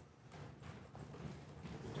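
Quiet pause in a lecture hall: faint room noise with a few soft knocks.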